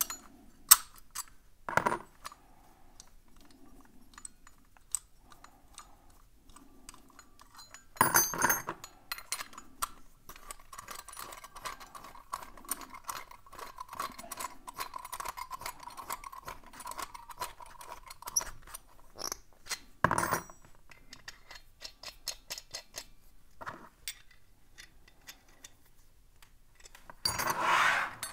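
Brass puzzle padlock being locked back up by hand: small metallic clicks and clinks of brass keys and lock parts, with a few louder clatters. From about 10 to 18 s a key turns the threaded bolt in the lock's base, making a long run of fine rapid ticking and scraping.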